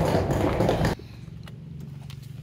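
Hard wheels of a rolling suitcase rumbling and clattering across a hard floor. The sound cuts off suddenly about halfway through and gives way to a quiet, steady low hum.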